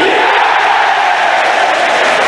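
Football stadium crowd cheering loudly and steadily as a penalty kick goes into the net.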